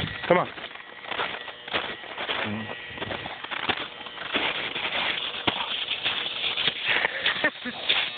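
Footsteps crunching in snow, with irregular, closely spaced crunches throughout.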